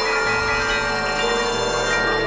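Dense experimental electronic music, several tracks layered at once: many steady synthesizer tones overlap at different pitches, with new notes entering partway through.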